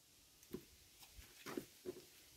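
Faint handling sounds: a few soft knocks and rustles as a hibiscus root ball is lowered into a plastic flowerpot.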